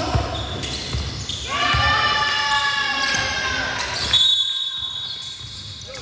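Basketball bouncing on a hardwood gym court during play, with the echo of a large hall. A long high-pitched tone starts about four seconds in.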